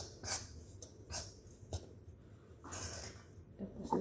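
Quiet sounds of fish-ball batter being mixed in a stainless steel bowl: a few short, soft noises under a second apart, then a longer soft rush about three seconds in.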